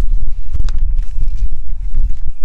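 Wind buffeting the microphone outdoors: a loud, irregular low rumble with scattered small clicks.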